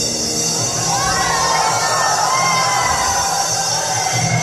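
Audience shouting and cheering, children's high voices to the fore, over steady background music; the shouting starts about a second in.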